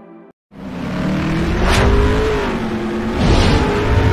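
Intro sound effect of a car engine revving, its pitch wavering, with two whooshes about two and three and a half seconds in. It starts after a short dropout to silence near the start.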